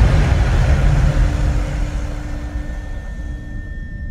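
Deep rumbling tail of a cinematic boom hit, slowly fading away. Faint steady drone tones of a horror score come in under it.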